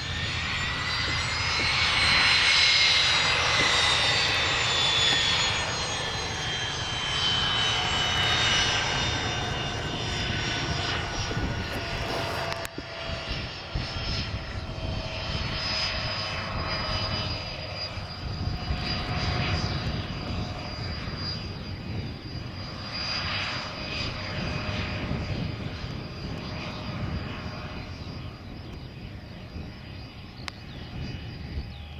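Learjet's twin turbofan engines whining at taxi power over a low rumble. The whine falls in pitch over the first ten seconds or so as the jet passes, then holds steadier and quieter.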